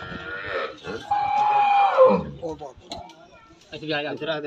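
Cattle lowing: one long call about a second in, held steady and falling in pitch at its end.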